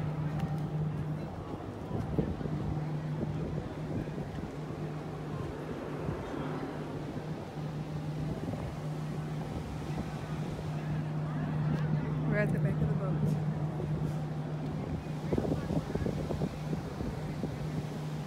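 Steady low hum of a cruise ship's machinery on an open deck, with wind noise on the microphone and indistinct voices in the background.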